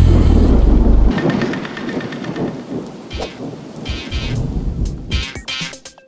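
Music with bass notes stops about a second in, giving way to a rushing, crackling noise that fades away over the next few seconds.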